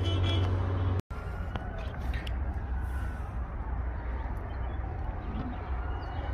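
Steady hum of a running vehicle engine. It cuts off abruptly about a second in, then gives way to a steady rumble of engine and outdoor noise.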